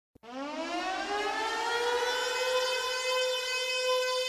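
A siren sound winds up in pitch over about the first second, then holds one steady tone, as a track's intro effect.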